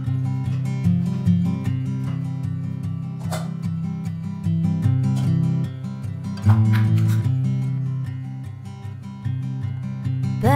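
Background music: an acoustic guitar strumming steady chords.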